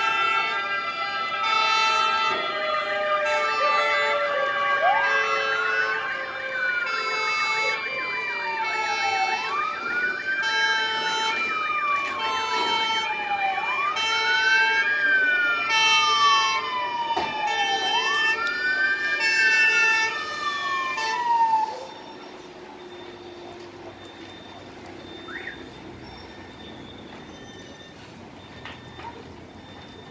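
Several emergency-vehicle sirens sounding at once: one is a wail that climbs quickly and then falls slowly, repeating about every four seconds, over steady and pulsing siren tones. They stop abruptly about two-thirds of the way through, leaving a much quieter background. The sirens are from fire engines arriving at a house fire.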